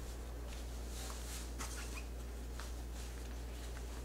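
Soft rustling and brushing of cloth as a folded cloth insert is pushed by hand into the pocket of a cloth diaper cover, a few faint brief scuffs over a steady low hum.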